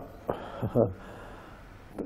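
A man's voice makes two short sounds that fall in pitch, then he draws a faint breath before speaking again.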